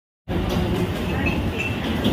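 Steady rumbling background noise of a busy open-air food court with faint distant voices, starting a quarter of a second in.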